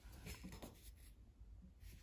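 Near silence, with a few faint, brief scratchy rubs of fingers against a porcelain jar's base.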